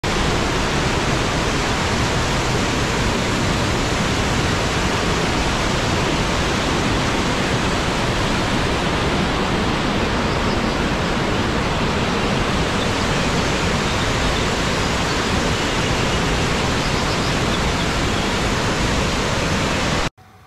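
Steady rush of whitewater tumbling over rocks in a mountain stream.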